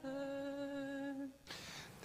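Liturgical chant: a voice holding one long, steady final note, which ends a little over a second in.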